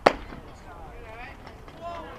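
One sharp smack of a pitched baseball striking, just after the start, followed by faint voices from the stands.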